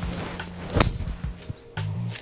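A golf club striking a ball off the tee: one sharp crack about a second in, over background music.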